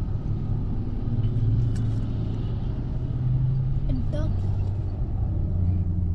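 Car engine idling at a standstill, heard from inside the cabin as a steady low hum.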